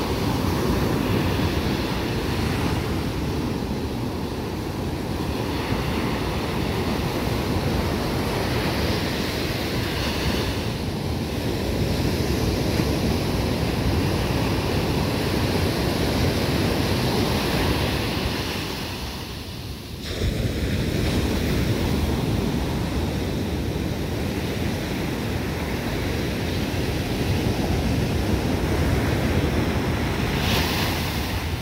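Ocean surf breaking and washing up a sandy beach, a steady rush of waves with wind on the microphone. The sound dips briefly about two-thirds of the way through, then returns.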